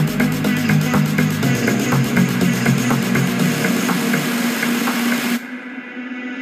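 Background electronic music with a steady beat; about five seconds in its high end cuts away and it turns quieter and muffled.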